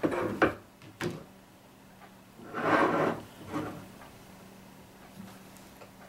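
Handling noise from an Astatic D-104 microphone as a small screwdriver turns the volume control in its base: two sharp clicks in the first second, then a longer rubbing sound about halfway through and a smaller one after it.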